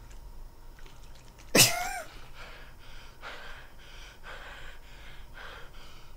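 A man's sudden short yelp about a second and a half in, the loudest sound, followed by a run of short gasping vocal sounds.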